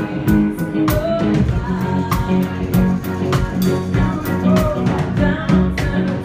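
Live band playing a pop song with drum kit, guitar and sung vocals. The drums keep a steady beat.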